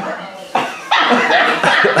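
People's voices, with a loud high-pitched cry starting about a second in.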